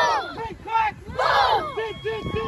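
A group of young children shouting a rhythmic team chant together, with loud group shouts near the start and about a second and a half in and short, quick calls between them.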